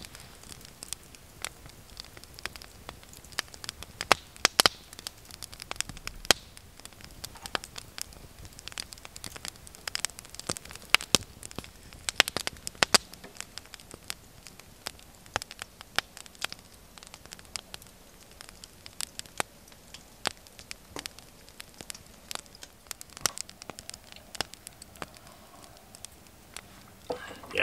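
Small wood fire burning in a fire bowl, crackling with irregular sharp pops and snaps over a faint hiss.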